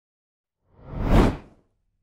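A single whoosh transition sound effect, swelling up about two-thirds of a second in and dying away within a second.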